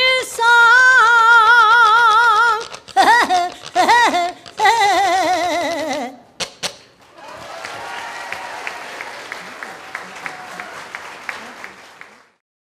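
An elderly woman singing the closing notes of a song with a wide vibrato: a long held note, a few short swooping notes, then a long falling note that ends about six seconds in. Audience applause follows and runs on until the end.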